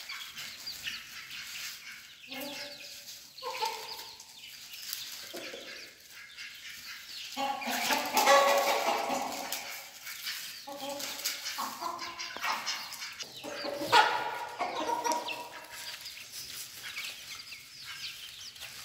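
Domestic hens clucking in repeated short runs of calls while they feed on grain, loudest around the middle. A brief sharp sound comes about three-quarters of the way through.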